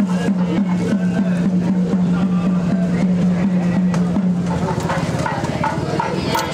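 A steady low drone with a regular pulse about three times a second, which stops about four and a half seconds in, over the chatter of a crowd.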